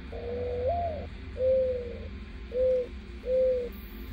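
Mourning dove's song, the male's call to attract a female: four soft coos. The first is long and rises in pitch partway through, the second falls slightly, and the last two are shorter and steady.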